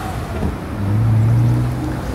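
A motor vehicle's engine running with a low steady hum over road noise, swelling louder about a second in as it drives by on the street.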